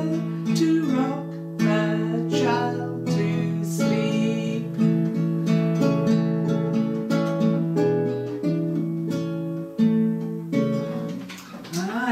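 Acoustic guitar played slowly, plucked chords ringing on in a gentle lullaby accompaniment, with a woman's soft singing over parts of it.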